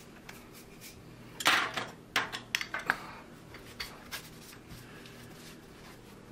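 Metal clicks and knocks from a Beretta 1301 Tactical shotgun being put back together, as the charging handle is pushed into the bolt. The loudest is a sharp knock with a short ring about a second and a half in, followed by several lighter clicks.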